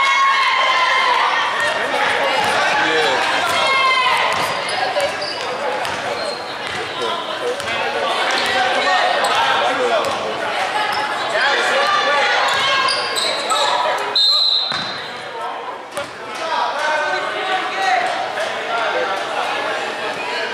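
Basketball being dribbled on a hardwood gym floor, with sneaker squeaks and players and spectators calling out, all echoing in a large gym. About fourteen seconds in, a short high whistle blast sounds, typical of a referee stopping play.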